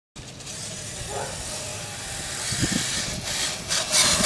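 Brushless electric RC monster truck running over grass: motor and drivetrain noise with a hiss of wind or grass, a few knocks, getting louder toward the end.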